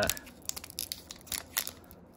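Foil wrapper of a Pokémon trading-card booster pack crinkling and tearing as fingers work at its sealed top: a scatter of small, faint crackles. The pack is tough to tear open.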